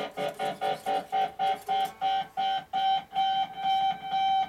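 Music led by a high note picked over and over on an electric guitar, about five times a second, slowing to longer held notes in the second half.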